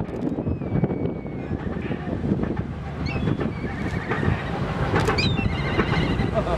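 Steady low rumble of wind on the microphone, with short high-pitched warbling, gliding whistle-like sounds from about three seconds in.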